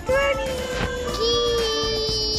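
Music with a high, child-like singing voice holding one long, steady note; a brighter ringing layer joins it about halfway through.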